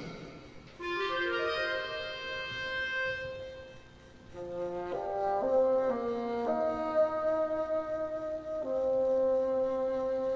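Slow orchestral music: sustained brass and woodwind chords that enter about a second in and shift to new chords every second or two.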